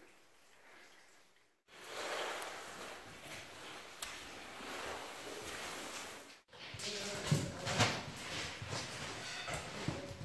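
People scrambling over loose rock, with boots scuffing and stones knocking against a steady hiss, and faint voices near the end.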